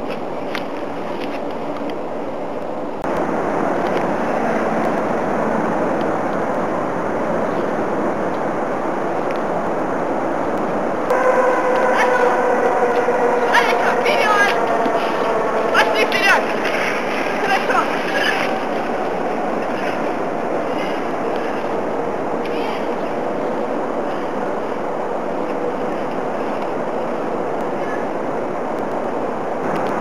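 Steady rushing noise of movement over snow. Partway through come long, high, slightly falling cries with a few sharp yelps, from excited harnessed Groenendael dogs.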